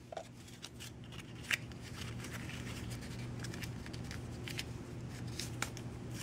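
A small Altoids mint tin full of metal driver bits being shaken. The bits are padded with neoprene foam and clamped shut, so there is no rattle, only faint scattered clicks and handling scratches.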